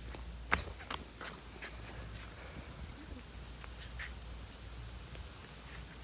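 Footsteps in squeaky flip-flops: a run of short, sharp squeaks at uneven spacing. The loudest comes about half a second in, and fainter ones follow over the next few seconds.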